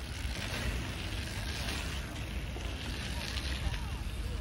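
Wind buffeting the microphone, with a bike's tyres rolling and hissing over the packed-dirt pump track as a rider passes close by, louder in the first two seconds.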